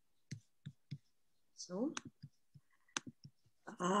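A handful of short, sharp clicks, irregularly spaced, around a hesitant spoken "So… um".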